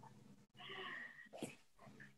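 A dog's faint, brief whine, under half a second long, followed by a tiny click; otherwise near silence.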